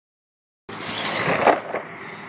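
An electric Traxxas radio-controlled truck driving on rough pavement: tyre and motor noise that starts suddenly about two-thirds of a second in, is loudest at around one and a half seconds, then drops to a steady, lower level.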